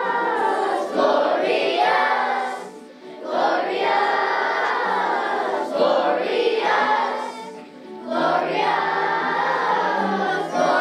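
Children's choir singing, with two short breaks between phrases, about three and eight seconds in.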